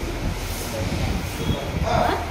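Low, steady rumbling background noise.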